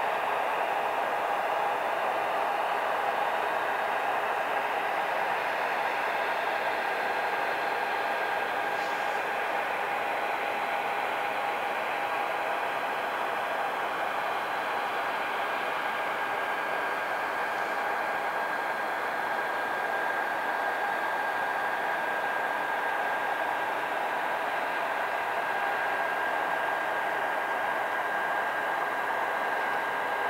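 Steady turbine whine with a constant rushing hiss from a Boeing 737-800 standing on the apron, two steady pitched tones held over the noise.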